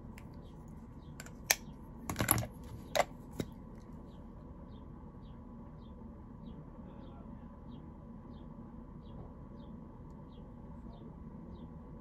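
A few sharp clicks and taps over about two seconds, from handling a makeup stick and its cap. After that, only a low steady room hum with a faint high chirp repeating about one and a half times a second.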